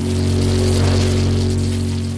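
A short musical transition sting: a held low chord with an airy whoosh that swells up and then begins to fade away.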